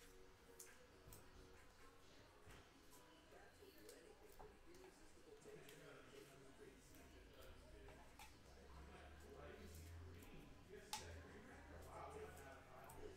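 Near silence: faint handling of trading cards, with small scattered clicks and one sharper click about eleven seconds in.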